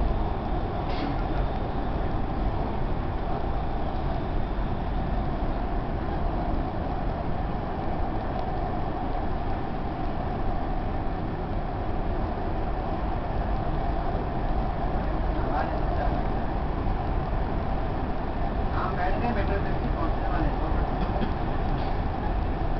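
Dubai Metro train running on its elevated track, heard from inside the carriage: a steady rumble with a constant hum that does not change.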